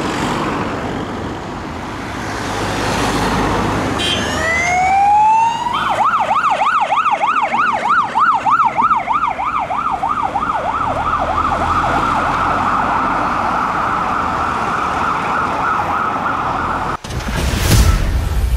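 Fire engine siren on a turning-out emergency vehicle, heard over traffic noise. A few seconds in it rises in one sweep, then switches to a rapid yelp of about three to four rises a second, then settles into a steadier high tone, before cutting off suddenly near the end.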